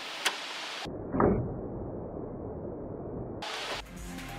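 A single sharp click as a small black plug is pressed into a hole in a car's steel lower pan, followed by muffled handling noise with one soft thud about a second in.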